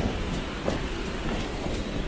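Steady, rumbling rush of water from the river rapids and the hot-spring jet spraying into the air.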